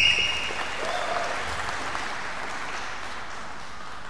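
Audience applauding in a large hall, slowly dying down. A brief high whistle sounds at the very start.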